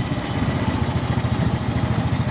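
A tuk-tuk's small single-cylinder engine running with a rapid, even pulsing beat, heard from inside the open cabin.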